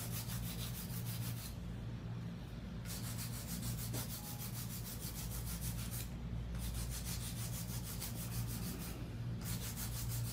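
Handheld nail file rasping back and forth over an acrylic nail in quick, even strokes, with a few brief pauses. This is the hand-filing that evens out the base of the nail.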